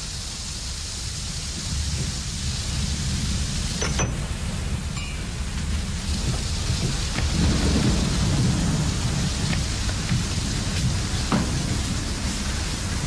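Steady rain with a low rolling rumble of thunder that swells in the second half. A couple of faint clicks sound over it.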